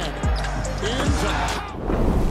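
Game sound from an NBA basketball game: arena crowd noise with a basketball bouncing on the hardwood court, under background music.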